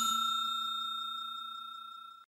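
Bell-ding sound effect ringing out, a clear steady tone fading evenly.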